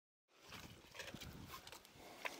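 Dead silence, then faint outdoor sound from about a third of a second in, with a few soft knocks.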